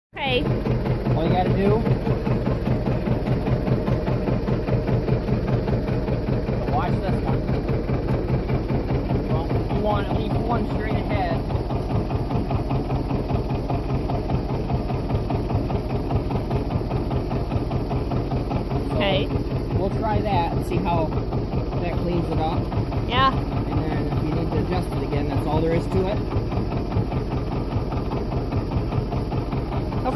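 Old two-cylinder John Deere tractor engine idling steadily with an even pulsing beat. Faint voices come and go in the background.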